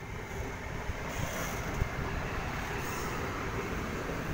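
NSW TrainLink Xplorer diesel railcar set pulling into the platform close by, a steady noise of diesel engine and wheels on the rails as the cars roll past.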